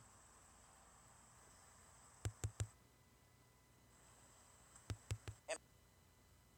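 Two quick runs of three sharp taps, the second about three seconds after the first: a finger tapping a phone's touchscreen to skip the video forward. Faint steady hiss lies underneath.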